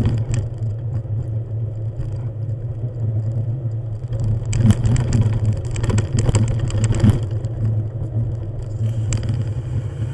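A motor vehicle travelling along a gravel road: a steady low engine drone, with a run of clicks and rattles from the rough surface from about four and a half to seven seconds in.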